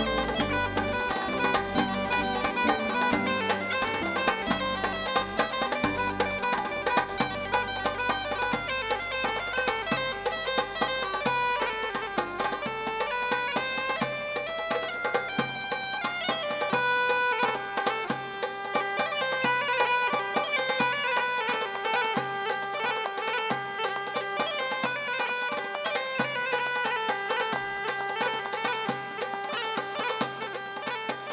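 Bagpipe with a wooden chanter playing a quick traditional Italian tune; the low bass underneath falls away about seven seconds in.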